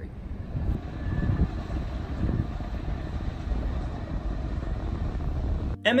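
Low outdoor rumble, fairly steady, swelling about a second in and again around two seconds, then cutting off abruptly near the end.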